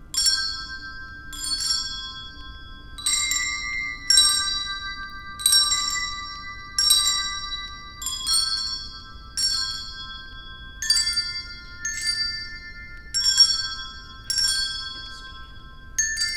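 Children's handbells played as a slow melody: about twelve notes in turn, one roughly every second and a quarter. Each note is struck and left to ring until the next.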